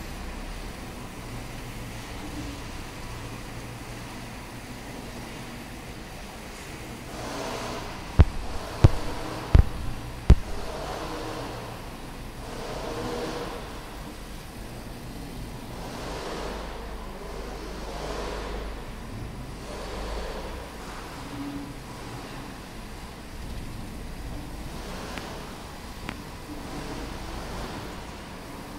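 A gantry laser cutting machine running: a steady low hum with repeated swelling whirrs as the cutting head travels over the sheet. About eight to ten seconds in come four sharp knocks, the loudest sounds.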